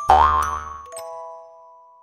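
A cartoon comedy sound effect: a sudden thump with a springy, rising boing, followed by a few held chime notes that fade away.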